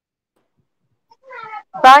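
Silence for about a second, then a short high-pitched animal call lasting under half a second, followed near the end by a woman's voice starting to read aloud.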